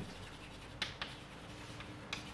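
Chalk writing on a blackboard: faint scratching as letters are drawn, with a few short, sharp chalk strokes, two close together about a second in and another near the end.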